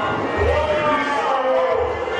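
Voices speaking or calling out over a low, slow beat that thuds about once every second and a quarter.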